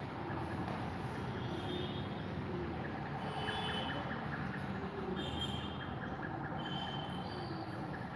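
Low steady background noise, with faint high-pitched tones coming and going.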